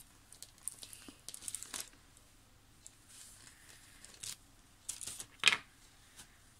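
Faint paper rustling and light taps as a clear acrylic stamp is pressed by hand onto a paper journal page and lifted off, with one sharper click about five and a half seconds in.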